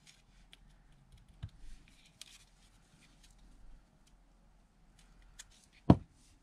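Faint rustling and small scattered taps of paper being handled and smoothed down by fingers onto a freshly glued collage page.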